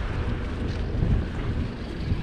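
Wind buffeting the microphone of a handheld camera, giving an uneven low noise.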